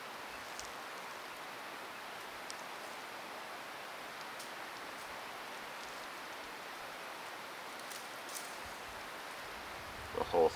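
Steady outdoor hiss with a few faint, crisp rustles and snaps as dry weed stems and seed heads are handled by hand for tinder.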